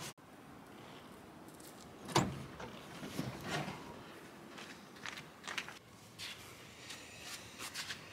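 A person climbing out of a parked car with the engine off: a single knock about two seconds in, then scattered light knocks and steps over faint outdoor background.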